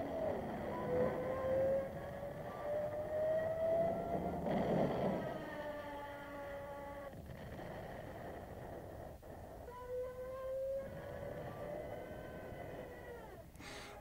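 A Stuka dive-bomber's whine in a dive, rising slowly in pitch over about four seconds, then holding, and rising again briefly about ten seconds in.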